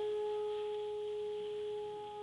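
School concert band holding one long steady note, a single pitch with its octave above, as a pause between moving phrases of a wind-band piece.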